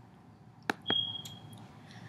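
Two quick sharp clicks just under a second in, then a single short high-pitched electronic beep lasting about half a second.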